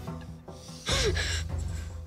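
A woman sobbing: one sudden, loud, choked sob about a second in, over soft background music.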